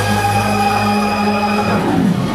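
Live soul band holding one long sustained chord, with a steady low bass note under it; the upper notes drop away near the end.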